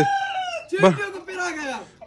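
Rooster crowing: one long, high call that slides down in pitch toward its end.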